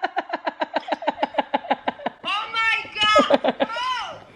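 A person laughing in a quick, even run of short bursts, about eight a second, followed by a few voiced sounds of speech or laughter in the second half.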